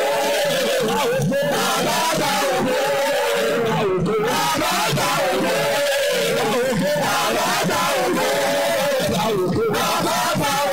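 A church choir singing together, loud and unbroken.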